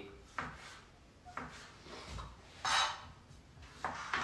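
Kitchen knife slicing cherry tomatoes into wedges on a cutting board: a few soft, irregular knocks and scrapes of the blade against the board, the strongest a little after halfway.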